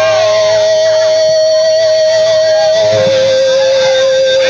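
Live rock band playing loud, with a lead note held with vibrato that steps down to a lower held note about three seconds in.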